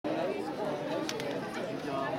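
Background chatter of many people talking at once, several voices overlapping, with no single clear speaker.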